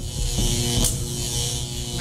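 Electric zap sound effect of a lightning bolt: a crackling high hiss with a buzz underneath that starts suddenly and cuts off just before the end.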